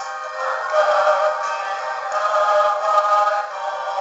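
Christian worship song (cantique) playing: held chords and melody notes with voice-like tones, thin-sounding with no bass. It swells louder about a second in and again near the three-second mark.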